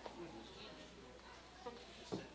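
Quiet room tone with a steady low electrical buzzing hum, and a single soft knock right at the start.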